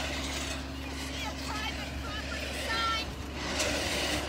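A vehicle engine idling with a steady low hum, with faint distant voices over it.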